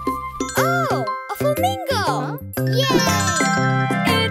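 A children's song's music backing, with children's voices calling out in sliding, sing-song tones and a tinkling jingle over it.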